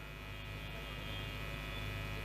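Steady electrical mains hum and buzz from a public-address microphone feed, slowly growing a little louder.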